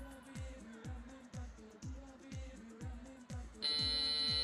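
Pop dance music playing over the venue speakers, with a steady kick-drum beat about two and a half times a second. Near the end a loud, steady electronic buzzer tone cuts in over it, the signal that the match time has run out.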